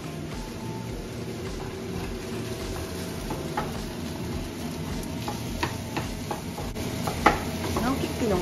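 Egg and rice sizzling in a frying pan over a gas flame, stirred and scraped with a wooden spatula. There are scattered clicks of the spatula against the pan, and a sharper knock about seven seconds in.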